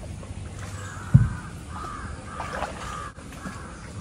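Crows cawing repeatedly, with a single dull low thump about a second in.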